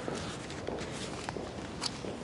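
Pages of a small book being turned and handled close to a lectern microphone: soft paper rustling with light clicks, and one sharper click near the end.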